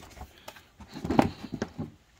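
Light plastic knocks and rustling as an engine air box cover is lowered and pressed down over a new air filter, with a few separate knocks, the strongest about a second in.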